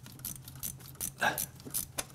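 Ratcheting box-end wrench clicking in short, irregular strokes as it turns a glow-plug-hole reamer pressed against hard carbon buildup at the entrance to a diesel prechamber.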